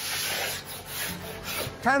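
A plastering trowel rubbing and scraping plaster across a wall in one continuous scrape lasting most of two seconds, with soft background music beneath.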